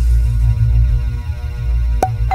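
Deep, steady low rumble with a faint sustained drone above it: the sound bed of a logo-reveal outro animation. A bright chime strikes just as it ends.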